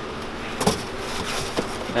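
Handling noise in a car's trunk: one sharp knock about two-thirds of a second in, then a few lighter clicks as the boxes and trunk-floor panel are handled.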